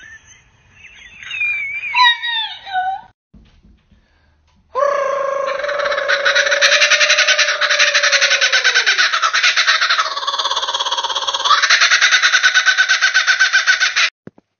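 Laughing kookaburra calling: a long, loud run of very rapid rattling notes lasting about nine seconds, opening with a held note that drops in pitch. Before it, about the first three seconds hold brief high-pitched human cries, then a short near-silent gap.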